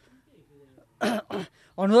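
Two short coughs, clearing the throat, about a third of a second apart.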